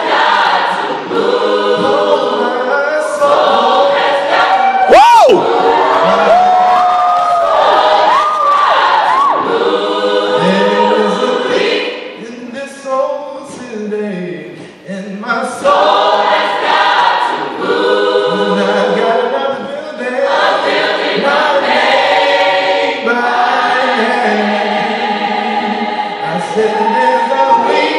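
Gospel choir singing a cappella in sustained chords, with a male soloist's voice sliding up and down over them a few seconds in. The singing thins into a short lull about halfway through, then the full choir comes back in.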